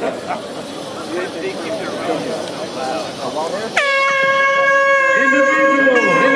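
Scattered voices calling across the field, then about four seconds in a loud air horn starts with a brief dip in pitch and holds one steady note.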